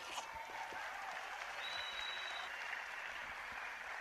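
Audience applauding, a faint, steady patter of many hands clapping.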